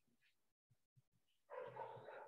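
Near silence, broken about one and a half seconds in by a faint, brief animal-like sound of under a second.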